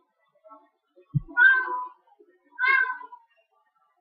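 A cat meowing twice, two short high calls about a second apart, with a brief low thump just before the first.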